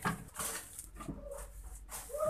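Plastic packaging rustling, with a few short knocks, as a computer monitor is handled and lifted out of its bag.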